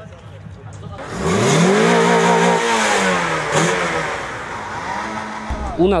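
Car engine revved hard about a second in, held high for a second or so, then let fall, followed by a second, shorter rev near the end.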